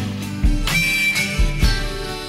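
Acoustic guitar strumming chords with a harmonica playing over it, in an instrumental passage of a country-rock song.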